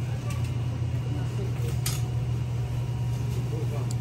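Steady low mechanical hum running without change, with a couple of faint clicks.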